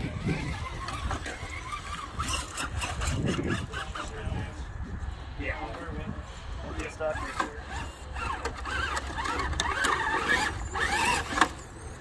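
Indistinct voices of people talking in the background, with a few sharp clicks or knocks.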